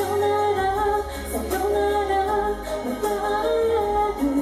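A woman singing a Japanese pop ballad live into a microphone over backing music, holding long notes.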